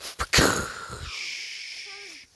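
A person's mouth imitation of a rifle shot echoing through woods: a sharp burst followed by a long breathy hiss that fades out over about a second and a half.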